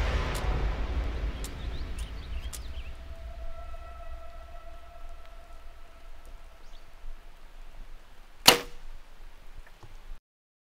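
Background music fades out, a faint held tone follows, and then a bow is shot once, a single sharp, loud release about eight and a half seconds in with a brief ring after it.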